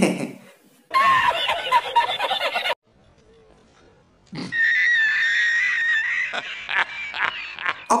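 Laughter edited in as a joke: a short burst of laughing about a second in, then, after a brief silent gap, a man laughing for several seconds from an inserted film clip.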